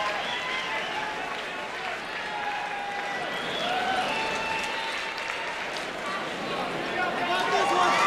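Arena crowd cheering and shouting, many voices at once with some applause, growing louder near the end.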